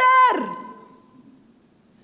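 A woman's amplified voice through a handheld microphone, ending a phrase on a drawn-out vowel that falls in pitch and stops about half a second in. A faint thin tone lingers and fades, then it is near quiet.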